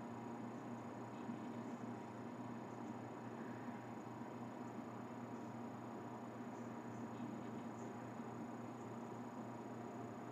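Faint steady hiss with a low electrical hum: the room tone of a recording microphone, with no distinct event.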